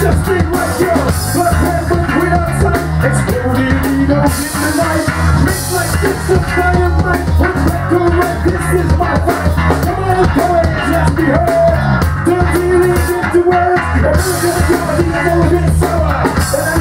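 Live rock band playing loud, with drum kit, bass and electric guitars through stage amplifiers.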